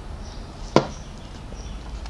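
A cup of coffee set down on a hard surface: a single sharp knock about three quarters of a second in, over a faint steady background.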